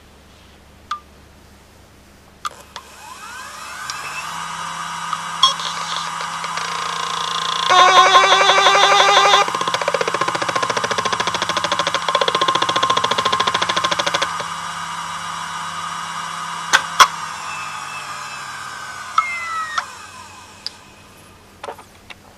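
IBM 8B036J0 36.4 GB 10,000 rpm SCSI hard drive spinning up with a rising whine. In the middle comes a loud stretch of fast, even head-seek chatter, then a steady high whine, and the drive spins down with a falling whine near the end.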